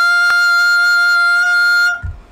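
A single high note, the top of the alto/contralto range, held dead steady without vibrato for nearly two seconds and cut off sharply. A brief click sounds about a third of a second in.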